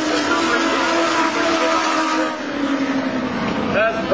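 Several Legends race cars running at full throttle past the microphone, their engine notes layered together and dropping a little in pitch past halfway as the pack goes by.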